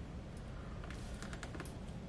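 Pen writing on paper: a quick run of faint, short scratchy ticks about a second in, over a steady low background hum.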